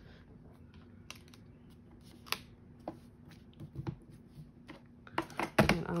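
Scattered light clicks and taps from hands handling a clear photopolymer stamp and cardstock on a stamp-positioning platform, with a louder knock near the end.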